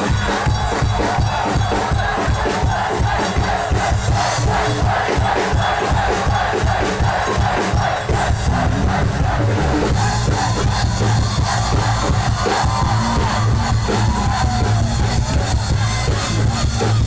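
Youth brass band with trombones and trumpets playing up-tempo music to a steady beat, with a large crowd shouting and cheering along.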